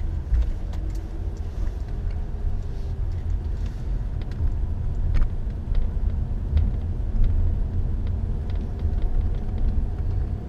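Road and engine rumble heard from inside a car driving slowly along a city street, with a few faint ticks.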